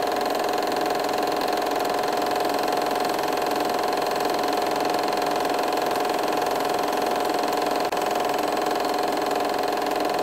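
Film projector running: a steady mechanical whir with a fine, fast clatter. It dips very briefly about eight seconds in.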